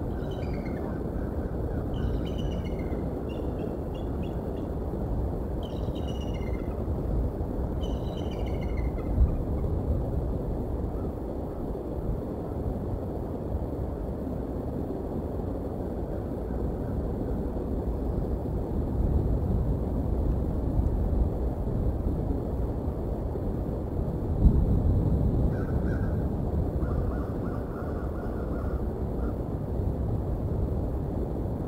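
Steady low outdoor rumble with wild birds calling. High, falling chirps repeat every couple of seconds through the first nine seconds, two dull thumps come about nine seconds in and again near the end, and a short run of lower calls follows the second thump.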